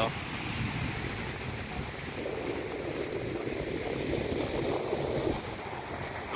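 Ocean surf breaking on a sandy beach, a steady wash of noise with wind buffeting the microphone, a little fuller from about two seconds in to near the end.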